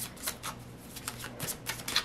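A tarot deck being shuffled by hand: a string of short, quick card flicks and snaps at irregular spacing.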